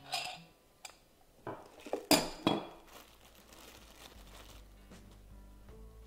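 Metal mincing-head parts of an electric meat grinder clinking and knocking against each other as they are handled and taken apart: about five sharp clinks in the first two and a half seconds.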